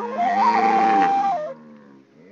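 Flute melody moving in small steps and settling on a held note, with a lower wavering tone sounding beneath it. It stops about a second and a half in, leaving a short pause.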